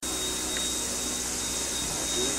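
Steady rolling noise and rush of a moving vintage railway carriage, heard from inside among the passengers, with no single event standing out.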